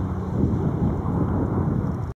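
Four Wright Cyclone radial engines of a Boeing B-17G Flying Fortress running at low power as the bomber rolls along the runway, a steady low rumble.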